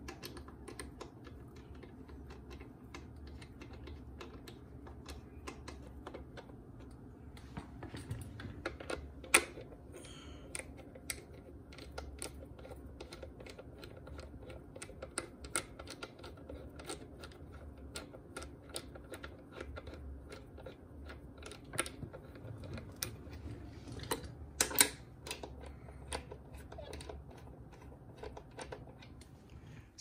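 Socket ratchet clicking rapidly as bolts are run down into an aluminium transmission casing. A couple of louder knocks come about nine seconds in and again near twenty-five seconds.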